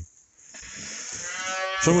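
A calf bawling: one drawn-out call that swells steadily in loudness for about a second and a half.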